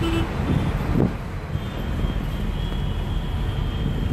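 Steady road and engine noise of a moving car, heard from inside the back-seat cabin.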